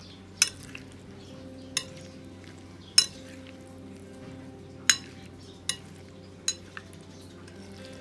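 A metal spoon tossing a fried egg salad in a ceramic bowl: soft wet stirring, broken by about seven sharp clinks of the spoon against the bowl at uneven intervals, roughly one a second.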